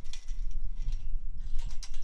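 Metal clinks and rattles from a chain-link farm gate being latched shut, with a cluster of sharp clinks near the end, over a steady low rumble.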